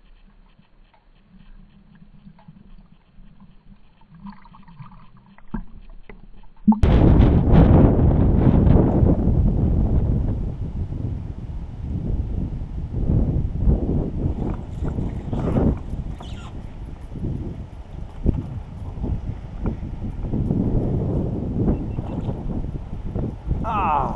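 Muffled, quiet sound from a submerged camera for about the first seven seconds, then a sudden change to loud, gusting wind buffeting the microphone over a kayak, rising and falling irregularly.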